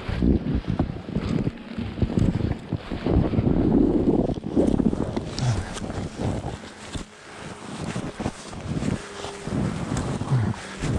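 Wind buffeting a body-worn action camera's microphone, an uneven low rumble that rises and falls and dips briefly about seven seconds in.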